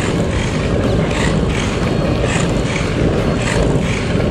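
Oxelo Carve 540 longboard rolling on 78A urethane wheels over asphalt, a steady rumble, with wind on the microphone.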